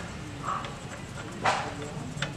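A single sharp metal click about one and a half seconds in as a steel pin is worked into the belt sander's spring-loaded tensioner arm, over a steady low background hum. A short higher note comes about half a second in.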